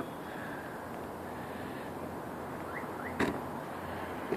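Steady city traffic noise from cars moving nearby, an even hum with no single engine standing out, and one short sharp click a little after three seconds in.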